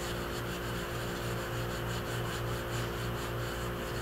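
Gloved fingertips rubbing over the surface of a damp soft-fired porcelain greenware doll head, a soft continuous rubbing, over a steady low hum.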